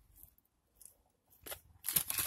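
Faint, scattered crinkles and rustles of a fast-food burger wrapper and paper being handled, with a louder rustle near the end.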